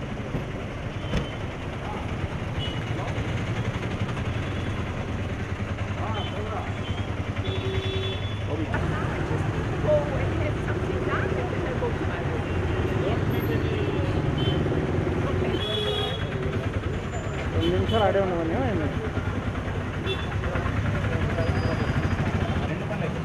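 Street traffic: vehicle engines running steadily, with indistinct voices of people close by.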